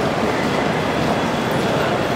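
Steady rumbling background noise with no clear speech or single distinct event.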